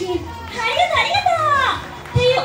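Children's voices calling out, high-pitched and sliding up and down in pitch, over a low steady hum.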